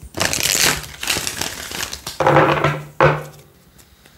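A deck of tarot cards being riffle-shuffled by hand: a flurry of fluttering cards for about two seconds, then two shorter bursts as the deck is pushed back together, dying away near the end.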